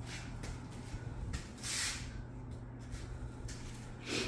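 Steady low hum of a small air-conditioning unit running in a small room, with a few light knocks and a brief rushing noise about halfway through.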